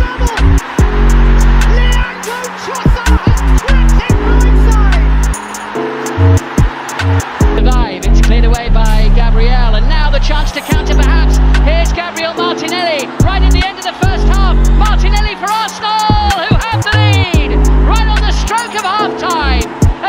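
Background music with a heavy bass line changing note every second or two and a sharp, steady beat, with wavering melodic lines above.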